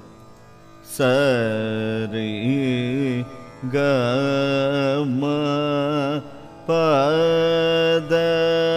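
Male Carnatic vocalist singing an unmetered raga alapana in Shankarabharanam, the opening 'ragam' section of a ragam-tanam-pallavi. He sings three long phrases of held notes with oscillating gamakas, starting about a second in after a quiet moment.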